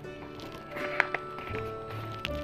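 Soft background music of held notes under a pause in the reading, with a couple of light clicks about a second in as a page of the picture book is turned.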